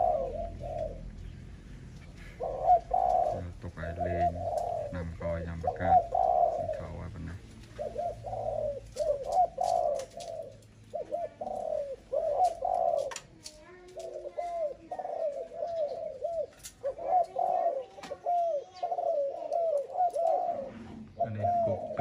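Spotted dove cooing in repeated phrases of short, low notes, with brief pauses between phrases.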